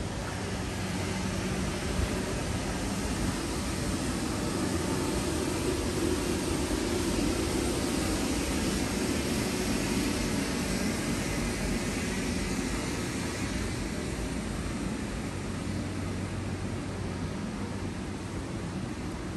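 Steady city traffic noise with a low hum underneath, growing louder in the middle and easing off again toward the end.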